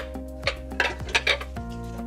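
Metal pots, pans and bowls clinking and knocking several times as they are lifted out of a kitchen cabinet, over steady background music.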